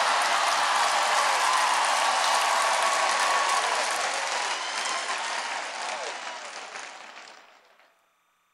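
A large audience applauding, a dense steady clapping that fades away over the last few seconds.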